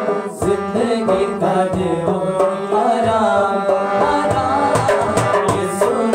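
A male voice singing a song, accompanied by a harmonium's sustained chords and a dholak hand drum beating a steady rhythm.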